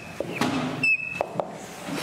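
Dry-erase marker squeaking on a whiteboard as numbers are written: a short high squeak about a second in, with a few light taps of the marker tip.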